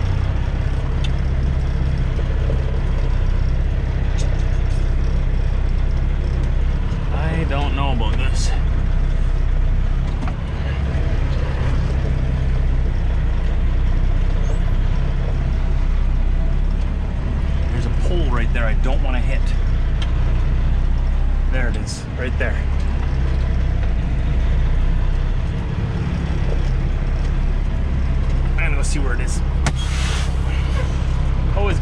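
Semi truck's diesel engine running at low speed as the truck creeps forward, a steady low drone heard from inside the cab.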